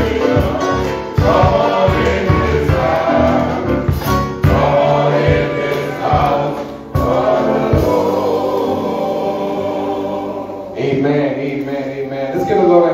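Gospel music: a men's choir singing with keyboard and drums. The drums drop out about eight seconds in, while the singing and keyboard carry on.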